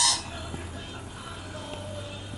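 Pied butcherbird calling: a short, loud fluted note right at the start, followed by a few faint scattered notes.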